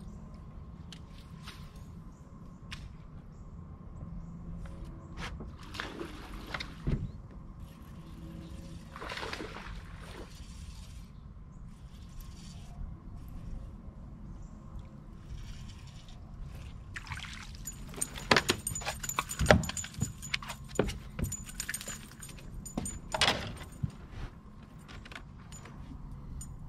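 Scattered small clicks, knocks and metallic jangles of fishing gear being handled on an aluminium jon boat, over a steady low rumble. The clicking is busiest from about 17 to 24 seconds in.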